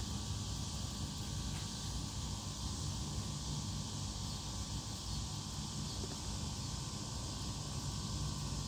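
Steady outdoor background of insects droning continuously, with a low rumble underneath.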